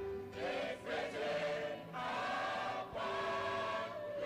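Church choir singing a hymn, holding long notes of about a second each with brief breaks between them.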